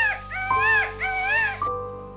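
An animal calling three times, each call a meow-like note that rises and falls, over steady background music.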